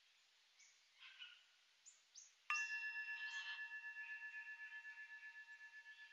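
Faint bird chirps, then a resonant metal chime struck once about two and a half seconds in, ringing on in several clear tones that fade slowly with a pulsing waver. It marks the end of the rest before the next pose.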